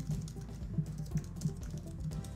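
Typing on a computer keyboard: a quick, uneven run of key clicks as a short phrase is typed, over background music with a steady low beat.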